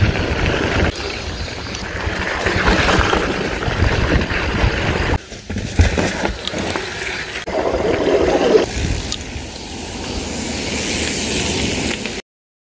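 Mountain bike riding fast down a dirt forest trail: tyres rolling over dirt and roots, the bike rattling and knocking over bumps, with wind on the microphone. The sound drops out briefly about five seconds in.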